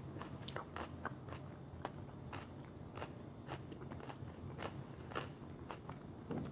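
A person chewing a mouthful of food close to a clip-on microphone: a run of short, irregular wet clicks and smacks, fairly quiet.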